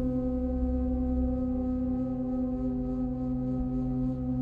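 Ambient meditation music: a steady drone of held tones over a low hum, unchanging throughout.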